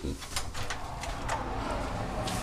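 Handling noise from a handheld camera being carried along, a few light clicks and knocks over a low steady noise.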